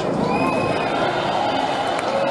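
Large crowd cheering and shouting in a steady mass of noise, with a few single voices holding long calls above it.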